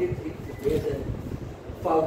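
A man speaking in short phrases with brief pauses.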